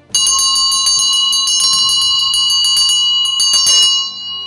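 A bell ringing rapidly and continuously: a fast run of strikes over steady ringing tones, starting suddenly and lasting about four seconds.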